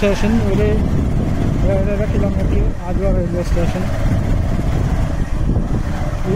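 Steady low rumble of a vehicle in motion, with a voice singing wavering, held notes over it on and off.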